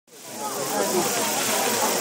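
Lady Knox Geyser erupting: a steady rushing hiss of jetting water and steam that fades in over the first half second, with onlookers' voices underneath.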